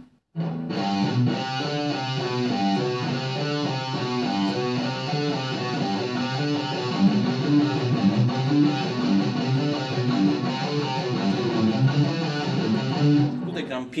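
Electric guitar through distortion, playing a fast, even run of low notes over and over. It is a four-note exercise on the two lowest strings: frets 3 and 7 on the thickest string, 3 and 5 on the next. The playing starts about half a second in and stops just before the end.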